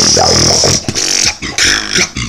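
Beatboxing: a low, grungy vocal bass buzz held under a steady hiss for most of a second, then breaking into shorter bass hits with sharp clicks.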